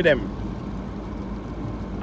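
Steady low hum of a car with its engine running, heard from inside the cabin.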